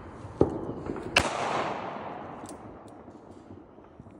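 Two gunshots about three-quarters of a second apart, the second followed by a long echo that fades away over about a second.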